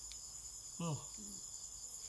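Crickets trilling steadily in the background, a continuous high-pitched pulsing tone; a short falling vocal exclamation comes about a second in.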